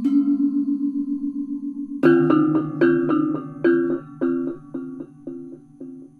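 Balinese gamelan selonding and reyong: iron-keyed selonding metallophones, tuned in slightly mismatched pairs, ringing with a wavering beat (ombak). About two seconds in, a chord is struck loudly, followed by repeated strokes that come closer together and fade away.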